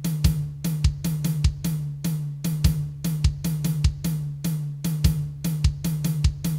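Programmed drum-kit loop from a sample plugin playing back: kick, snare and hi-hat hits in a syncopated pattern with triplets, over a steady low tone. The presenter first calls it a hemiola, then corrects it to an African rhythm.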